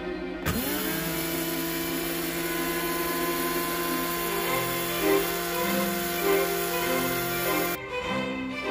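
Hamilton Beach electric spice grinder switched on, its motor whining up to speed about half a second in, then running steadily as it grinds whole spices into powder, and cutting off shortly before the end. Background string music plays underneath.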